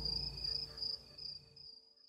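Crickets chirping in a steady, high, slightly pulsing trill over a low rumble. The whole bed fades out to silence just after the middle.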